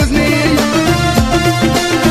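Instrumental passage of a Moroccan chaabi song: a busy, steady percussion beat under held melody notes, with no singing.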